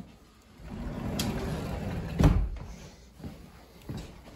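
A house door open onto the outside, outdoor background noise coming in, then the door shutting with a single heavy thump a little over two seconds in.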